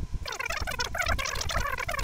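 Computer keyboard typing, fast-forwarded so that the keystrokes run together into a rapid, high-pitched chatter with brief pauses.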